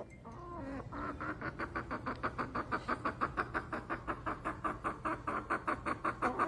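A chicken clucking in a fast, even run of about six short clucks a second, starting about a second in, over a low steady hum.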